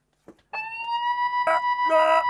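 A steady, high electronic tone starts suddenly about half a second in after a soft click and holds at one pitch, with two short extra sounds laid over it near the end.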